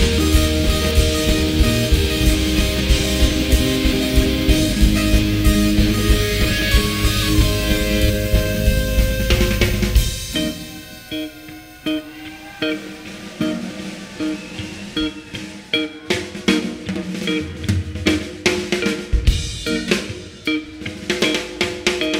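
Live rock band playing an instrumental jam. The full band with heavy bass plays for about half the time, then drops out suddenly, leaving sparse drum kit hits, snare and rimshots, and a few held keyboard or guitar notes.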